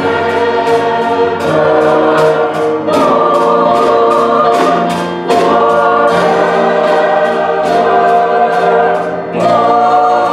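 Small mixed choir singing in harmony over accompaniment, with a steady ticking beat about three times a second.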